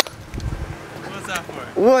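Low outdoor background noise with a sharp click at the start, then a man's voice calls out a greeting near the end.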